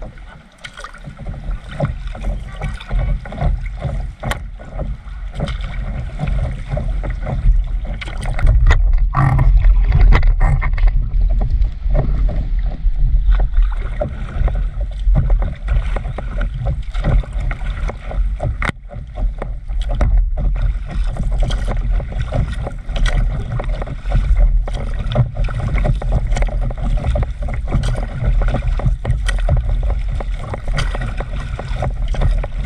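Water splashing and rushing along the nose of a stand-up paddleboard as it glides, picked up close to the water surface, with a heavy low rumble. It grows louder about eight seconds in.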